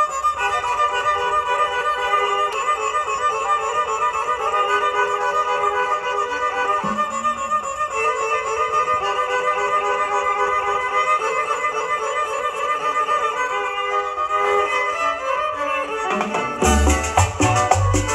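A chanchona band plays live, with a violin carrying the melody over lighter accompaniment. Near the end the bass and percussion come in with a strong beat.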